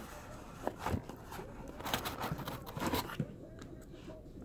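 Cardboard boxes being handled, a box pulled from a cardboard shipping case: scattered rustles, scrapes and light knocks of cardboard.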